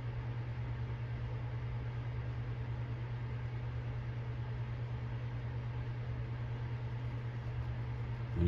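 A steady low hum with a constant hiss underneath, unchanging throughout.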